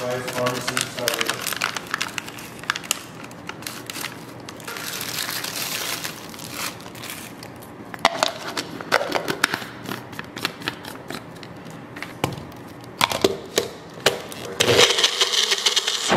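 A plastic protein-powder sample packet crinkling as powder is poured into a personal blender cup, then repeated plastic clicks and knocks as the blade base is screwed on and the cup is seated on the motor base. Near the end the blender motor runs briefly, louder and steady.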